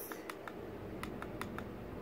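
Small push-button switch on a battery-powered light-up bow headband, clicked repeatedly to cycle its lights: three quick faint clicks, then after a short pause four more, evenly spaced.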